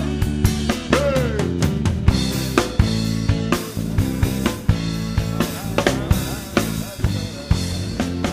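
Recorded song with a prominent drum kit beat, bass drum and snare hitting steadily under sustained instrumental notes, and a short sung phrase about a second in.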